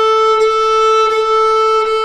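A violin's open A string bowed in one long, steady note, drawn with the wrist and knuckles lowered and the fingers settled into the bow stick.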